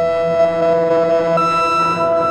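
Ciat-Lonbarde Tetrax analog synthesizer holding a sustained drone chord, processed through a Chase Bliss Mood MkII pedal. About one and a half seconds in, the upper tones jump to a new, higher pitch.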